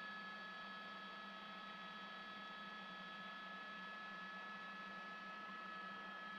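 Faint, steady hum and hiss with a few constant high tones and no change: the background noise of a news helicopter's open audio feed, with no one talking on it.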